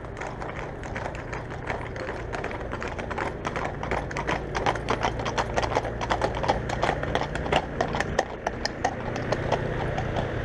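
Shod horses' hooves clip-clopping on asphalt as a mounted horse escort passes close by. The hoofbeats grow louder and denser from about three seconds in, over a low steady engine hum.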